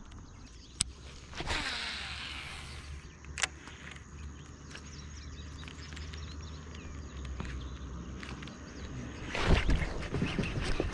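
Rod, reel and line handling from a kayak while a topwater frog lure is twitched across the water: a couple of sharp clicks and a brief rustle over a low steady rumble. Near the end a sudden loud burst of noise as a bass strikes the frog and the hook is set.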